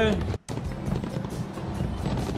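Background music under a steady noisy haze, briefly cut to near silence a little under half a second in.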